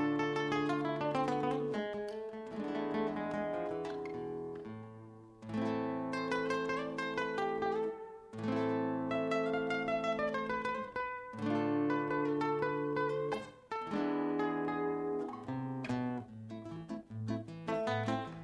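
Solo nylon-string classical guitar with a cutaway body, played fingerstyle: chords over bass notes mixed with quick melodic runs, in phrases broken by brief pauses.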